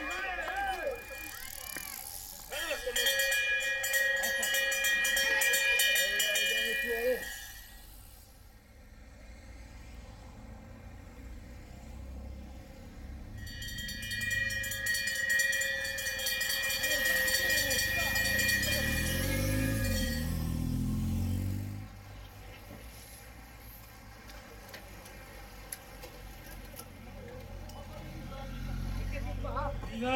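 A hand bell rung rapidly in two long bouts, the bell that signals the last lap of a cycling circuit race. A motor vehicle passes during the second bout.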